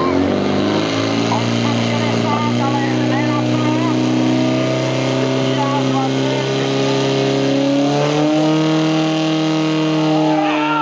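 Portable fire pump's engine running hard and steady as it drives water through the charged hoses to the nozzles, its pitch shifting about eight seconds in; spectators shouting over it.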